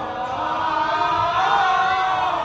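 Javanese gamelan music: bronze saron metallophones and gongs ringing held tones under sung vocals.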